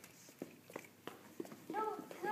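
A few light taps and knocks on a hard floor as small children move about and pick up small objects, then, near the end, a young child's short, high-pitched call.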